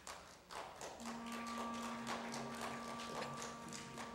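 Footsteps and shuffling of people walking across a church floor, heard as irregular light taps and knocks. About a second in, a single low instrument note begins and is held, with a fainter higher note above it.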